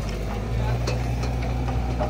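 Caterpillar hydraulic excavator's diesel engine running steadily at low revs, with a few faint clicks and knocks over it.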